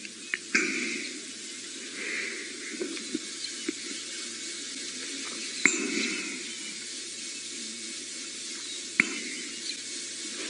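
Lionesses grooming each other: soft, wet licking and rasping in short bursts, with a few sharp clicks between them.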